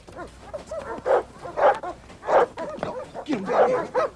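Dog barking: a run of loud barks about a second apart, with softer, shorter yelps between them.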